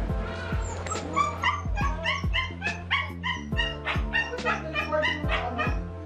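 Background music with a steady beat, over which a small dog yips rapidly, about three short high yips a second, from about a second in until near the end.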